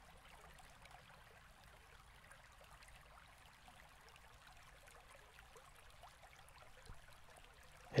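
Near silence: faint room hiss with a few faint small ticks, one slightly louder about seven seconds in.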